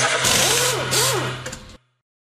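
Sound effect for an animated channel logo: a loud, noisy rush over a steady low hum, with a few tones swooping up and down, cutting off suddenly near the end.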